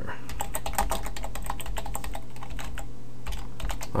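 Typing on a computer keyboard: a run of quick, irregular key clicks that thins out briefly past the middle, over a low steady hum.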